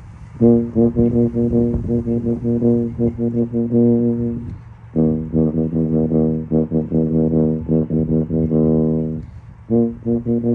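E-flat tuba playing a double-tonguing exercise: fast repeated, detached notes in three phrases, with short breaks for breath just after the start, about halfway through and near the end.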